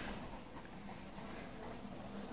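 Pen writing on paper, faint.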